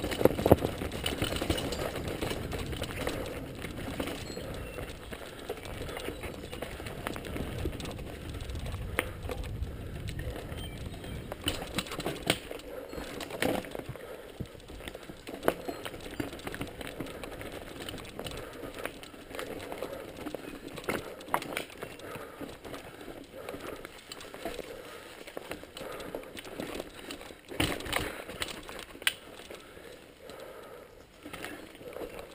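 Mountain bike riding fast downhill over rocky singletrack: tyres rolling over stones and roots with frequent irregular clatters and knocks from the bike, under a steady rush of noise, with a low rumble heaviest in the first ten seconds.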